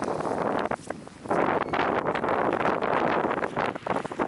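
Wind buffeting the camera microphone outdoors: a loud, rough rushing with a short lull about a second in.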